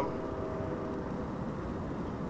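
Steady outdoor background noise, a low even rumble and hiss with no distinct events.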